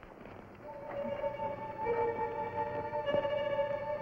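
Background dramatic music: soft held notes that come in under a second in and swell, with another note joining about two seconds in.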